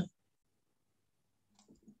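Near silence: the call audio is gated to nothing between one speaker's last word and the next, with a few faint soft sounds just before the next voice comes in.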